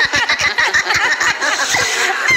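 Several cartoon voices chattering and exclaiming over one another in a fast, excited jumble.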